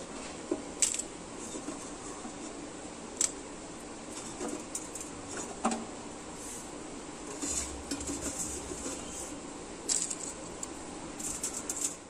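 Scattered light taps and clinks of shallots and spices dropping into a metal pressure cooker, a few seconds apart, with a small cluster near the end.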